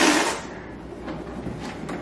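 Black latex balloon being blown up and handled: a short rush of breath into it at the start, then faint rubbing and handling noises.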